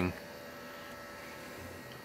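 Low, steady electrical hum with faint thin whining tones above it, from battery chargers and the inverter powering them, running.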